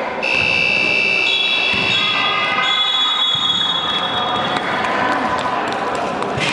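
Electronic timer buzzer sounding one long steady high tone for about two and a half seconds, overlapped by a second, higher steady tone that carries on to about four and a half seconds in; it signals the end of the match time. Ball thumps and voices echo in the sports hall around it.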